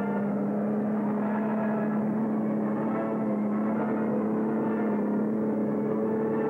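Tank engines droning steadily: a constant low hum with a rough rumble, unchanging throughout. It has the narrow, muffled sound of an old film soundtrack.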